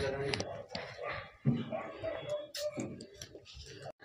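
Faint, indistinct background talk with a few light clicks.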